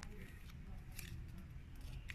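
Faint crinkles of a small rolled paper strip being unrolled by hand: a few short, crisp crackles over a low steady background rumble.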